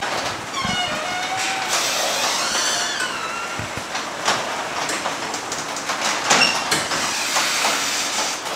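Sectional garage door running down on an electric opener: a steady rattling run of rollers in the steel tracks, with squeals in the first few seconds and a few knocks further on.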